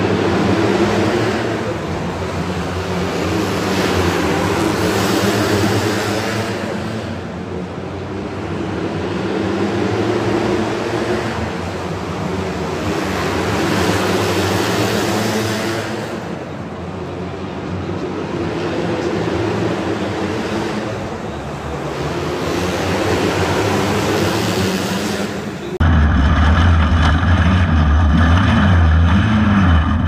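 A pack of outlaw dirt karts racing around an indoor dirt oval, their engines swelling and fading every four or five seconds as they lap. About four seconds before the end the sound cuts to a single kart engine close up, louder, lower and steadier.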